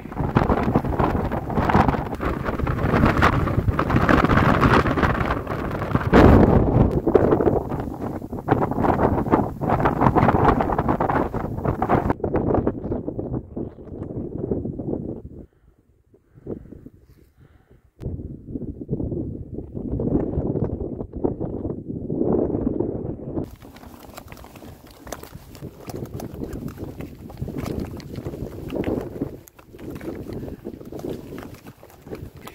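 Wind buffeting the microphone in uneven gusts, with a brief near-silent gap about sixteen seconds in.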